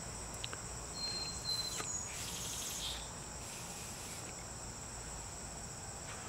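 Insects chirring steadily in the background, a continuous high-pitched drone, with a thin whistle-like tone briefly about a second in.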